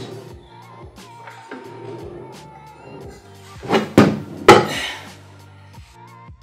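Background music, with two loud knocks about half a second apart some four seconds in as a circular saw is handled and set down on a tabletop.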